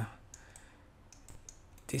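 Faint clicks of a computer mouse and keys during screen work, about eight light clicks over a second and a half.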